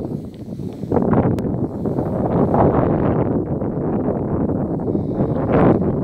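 Wind buffeting the microphone, a loud, uneven rumble, with rustling of dry grass.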